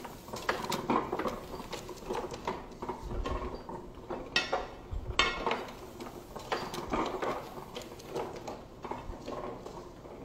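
Antique platen printing press running: a steady metallic clatter of clicks and clinks from its rollers, linkages and platen, with two louder clacks about four and five seconds in.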